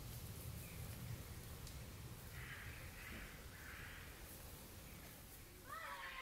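Quiet woodland ambience with a low rumble of wind on the microphone and two short, harsh bird calls a little past halfway through, followed near the end by a brief sliding call.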